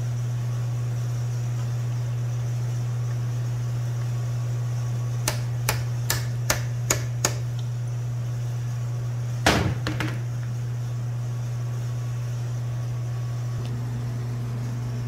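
Hammer tapping a small roll pin punch to drive the stop pin into the bar-oil adjusting screw of a Stihl MS 661 chainsaw, so the oiler can be turned up further. About halfway through come six quick, light, evenly spaced taps, then a couple of seconds later one harder strike with a short ring, followed by a faint tap.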